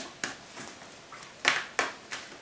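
Tarot cards being handled and drawn from the deck, giving a few sharp card snaps: two at the start and two more about one and a half seconds in.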